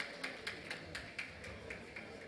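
Faint applause dying away: a few people clapping, sharp claps about four a second that grow fainter.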